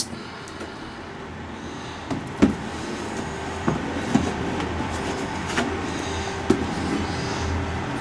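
Light plastic clicks and knocks as a clear plastic seed-propagator lid is lifted and handled, over a steady low rumble.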